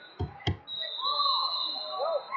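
A referee's whistle blown in one long, steady, high note, starting just over half a second in and lasting over a second, the signal to restart the wrestling bout. Two dull thumps come just before it, and voices carry on underneath.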